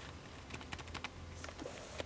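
Dry-erase marker writing on a whiteboard: a quick run of short taps and strokes about half a second to a second in, over a low steady hum.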